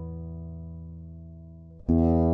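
Acoustic guitar chord left ringing and slowly fading, then a new chord plucked sharply near the end.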